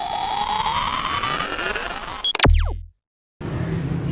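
Intro sound effect: a synthetic riser that climbs steadily in pitch for about two seconds, ending in a sharp hit with a short low boom. After half a second of silence, steady background room noise with a low hum comes in near the end.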